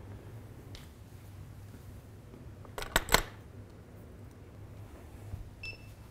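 Studio camera and flash gear: a quick cluster of sharp clicks about halfway through, then a short electronic beep near the end.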